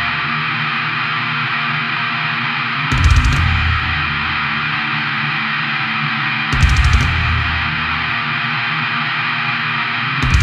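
Death doom metal: a sustained wall of heavily distorted electric guitar, with slow, heavy drum and bass hits coming in about three seconds in and again near seven seconds.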